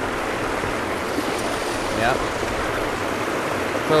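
Creek water rushing steadily over a low rocky spillway drop, an even, unbroken rush.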